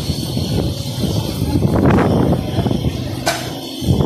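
Strong, gusty wind buffeting the microphone, over the rush of a rough sea and rain.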